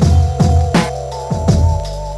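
Boom bap hip-hop instrumental beat: heavy kick drum and snare hits at a slow tempo, the snare landing about every one and a half seconds, over a deep bass and a held, wavering melodic sample that steps up in pitch about a second in.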